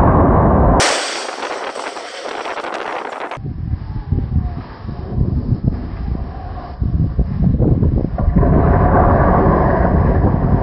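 The tail of an explosive demolition blast, followed by the deep, rough rumble of a concrete cooling tower collapsing, which swells again over the last couple of seconds as the structure hits the ground.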